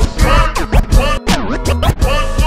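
A DJ scratching a hip-hop record on a DJ controller's jog wheel, with quick back-and-forth sweeps over the beat.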